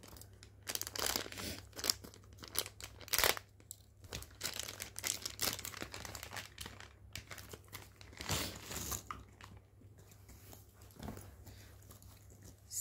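Small plastic bag of cardboard jigsaw puzzle pieces crinkling and rustling in irregular bursts as it is opened and handled, with the pieces tipped out and spread by hand.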